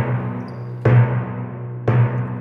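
Background music with a heavy, slow beat: a loud hit about once a second, each ringing out over a steady low tone.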